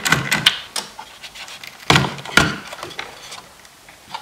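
A small screwdriver clicking and scraping as it backs out a screw from an iMac G5's plastic blower fan. Then, about two seconds in, come a couple of louder knocks as the loose fan housing is handled and lifted off its metal mounting.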